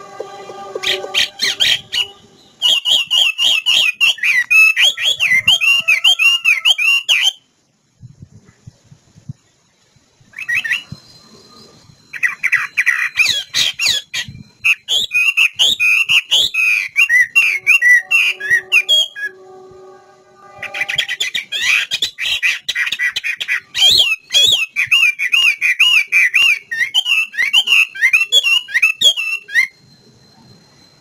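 Chinese hwamei singing: three long bouts of rapid, varied whistled phrases, separated by pauses of a few seconds. A lower, steadier call made of several held tones sounds at the start and again just before the last bout.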